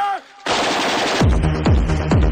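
Electronic futurepop track: a held melodic phrase ends and the music drops out for a moment. About half a second in comes a loud burst of dense, gunfire-like noise, and just over a second in a steady kick-drum beat comes back in at about two and a half beats a second.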